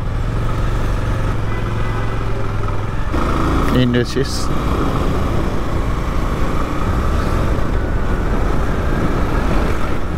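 Bajaj Avenger 220 motorcycle's single-cylinder engine running steadily while riding along a road, with wind and road noise on the camera microphone.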